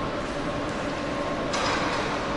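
Underground metro station ambience: a steady mechanical hum from a metro train standing at the platform. About one and a half seconds in, a short, sharp hiss.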